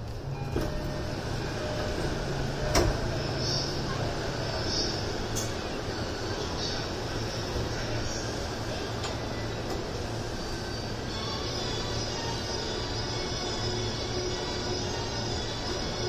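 A Keihin-Tohoku Line commuter train standing at a station, heard from inside: a steady low hum from the train, with a sharp click about three seconds in. From about eleven seconds a tune of held notes joins in, typical of a platform departure melody.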